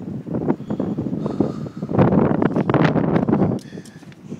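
Crackling rustle and buffeting on the microphone as the handheld camera is moved about, loudest in the middle and dying away near the end.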